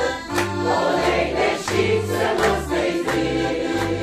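Mixed choir of men's and women's voices singing together, accompanied by a piano accordion keeping a steady rhythmic bass under the voices.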